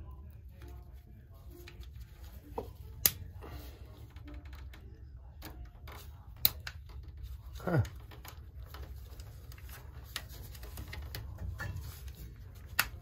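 Hand work on a circulator pump's wiring connections: scattered small clicks and rattles, with two sharp clicks about three and six and a half seconds in and a brief sound falling in pitch near eight seconds, over a steady low hum.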